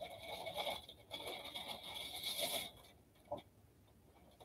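Faint rustling and scraping of a sheet of wax paper being pulled out and handled, lasting about two and a half seconds.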